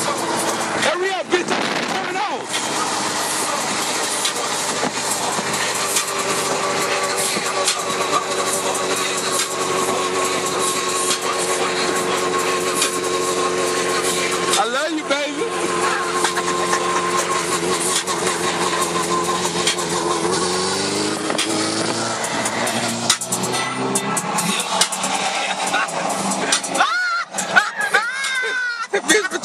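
A vehicle engine running at a fairly steady pitch under a constant rushing noise, with its pitch dropping in a few steps about two thirds of the way through.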